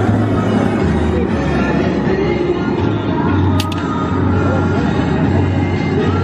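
Steady rushing noise of a propane burner running under a big pot of water at a rolling boil, as a basket of crawfish is lowered in. Music plays underneath with a low, shifting bass line.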